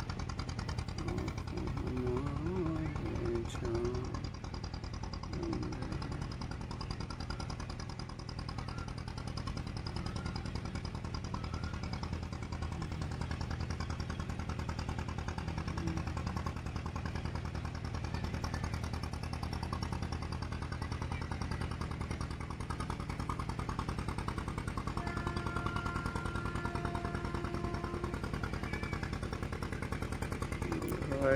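A river ferry boat's engine chugging in a fast, steady, even rhythm.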